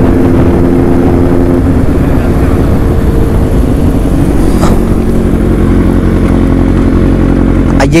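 Motorcycle engine running loud and close at a steady pitch while the bike is ridden, its note shifting slightly about one and a half and three seconds in.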